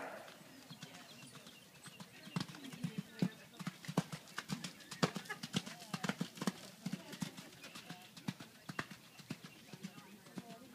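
Hoofbeats of a cantering horse on arena footing, growing louder and quickening about two seconds in, loudest as it passes close about four to six seconds in, then fading as it moves away.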